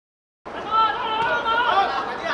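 Dead silence for about the first half second, then several voices chattering and calling out at once, loud and overlapping.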